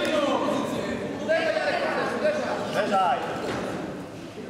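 Men's voices shouting, the words unclear, echoing in a large sports hall, with louder calls about a second and a half in and again near three seconds.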